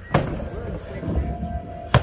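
Skateboard on a halfpipe ramp: a sharp knock just after the start and another near the end, with the wheels rolling across the ramp surface in between.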